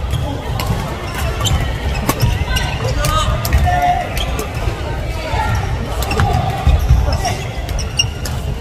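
Badminton doubles rally on an indoor hardwood court: sharp cracks of rackets striking the shuttlecock, repeated many times, with players' footfalls thudding on the wooden floor.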